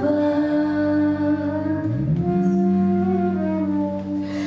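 Live band music: long held notes in several voices, with a low note sliding up about halfway through and then holding.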